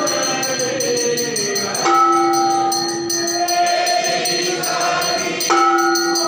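Devotional aarti singing by a group of voices, with held notes that change about every two to four seconds, over metal percussion ringing in a quick, steady rhythm.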